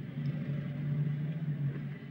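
Electric power-window motor inside the car, raising the window glass: a steady low hum that dies away near the end.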